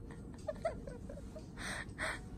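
A woman giggling: a few short, high-pitched squeaky laughs, then a breathy exhale near the end.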